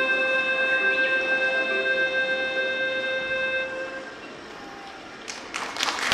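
Hulusi (Chinese gourd flute) ensemble holding a long, steady final note that fades out about two-thirds of the way through. Audience applause starts near the end.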